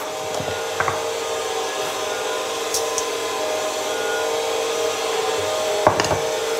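Stand mixer motor running steadily, its dough hook slowly kneading yeast dough, with a low whine of a few held tones. Two light knocks, about a second in and just before the end, the second the sharpest sound.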